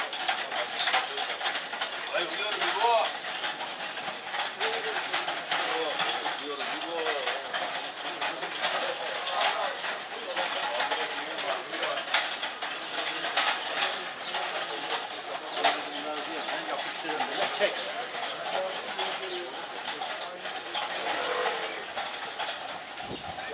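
Street ambience in a busy shopping lane: indistinct voices of passers-by over a continuous clatter of small clicks and knocks.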